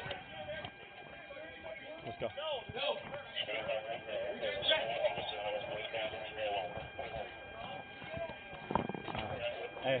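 Mostly distant voices and shouting from people around the scene, faint and overlapping, with a few thin steady tones held behind them. A nearby voice says "Let's go" about two seconds in, and there is a louder brief sound shortly before the end.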